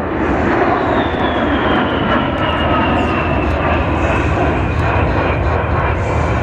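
Twin General Electric TF34 turbofan engines of an A-10 Thunderbolt II flying a high-G turn: a steady, loud jet roar with a high whine that slowly falls in pitch.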